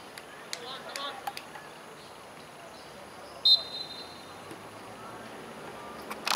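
A referee's whistle blown once, a short sharp blast about three and a half seconds in, over faint distant calls from the players.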